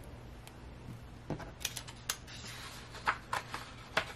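Faint, light clicks and rustles of hands handling paper and the pages of a thick book, a few quick ones in the second half.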